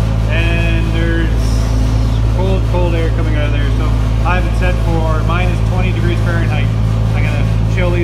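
Trailer refrigeration (reefer) unit running cranked up, a steady low hum heard inside the trailer, running to freeze out wax moth in stored brood comb.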